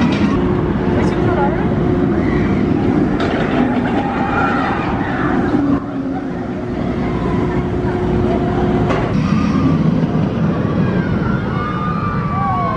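Bolliger & Mabillard steel hyper coaster train running along the track with a steady rumble and a held tone, mixed with people's voices and shouts; the sound dips briefly about halfway through.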